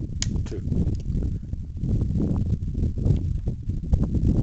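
Wind buffeting a pocket camera's microphone, with small clicks and handling knocks from an 1875 .577 Snider rifle's hammer as it is drawn back to full cock; a sharper knock comes near the end.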